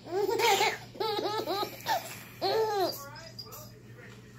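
A young child laughing in several short, high-pitched bursts, dying down near the end.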